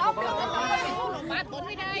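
Several people talking over one another, with no clear single speaker.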